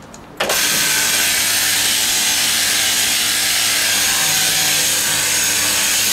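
Sheep-shearing handpiece driven by an overhead shearing machine, switched on about half a second in and then running steadily with an even, buzzing whir as it starts cutting the fleece.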